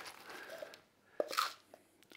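Plastic bag of powdered meal crinkling faintly as a scoop is dug into the powder, then a sharp tap and a short rustle a little past the middle as the scoop comes out.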